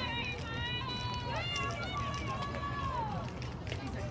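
Girls' voices calling out long, sing-song shouts, each pitch held for about a second before it falls away, over a steady low rumble.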